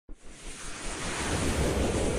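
Logo-intro sound effect: a rushing whoosh of noise with a low rumble underneath, starting abruptly and swelling in loudness over the first second and a half.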